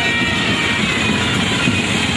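Loud, steady procession din: street band music partly buried under an engine-like rumble.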